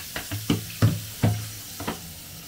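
Kitchen tap running into a stainless-steel sink while a plastic bottle and dishes are handled in it, with about five sharp knocks and clatters over two seconds.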